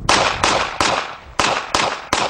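Pistol shots, about five in quick, uneven succession, each with a short echoing tail.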